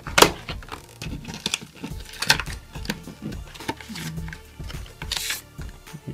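Cardboard and plastic retail packaging being slid and pulled out of its box, with scraping and rustling and a few sharp knocks. The loudest knock comes just after the start and a longer rasp about five seconds in, over steady background music.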